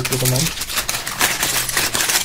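Thin plastic packaging bags crinkling as they are handled, a dense run of crackles starting about half a second in.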